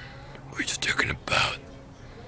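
A man whispering briefly: a few short, breathy bursts around the middle.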